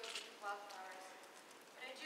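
Speech: a child's voice speaking lines on stage, faint and distant.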